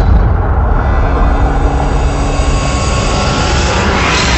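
Cinematic logo-reveal sound effect: a loud, steady deep rumble with a few faint held tones over it, in the manner of trailer-style intro music.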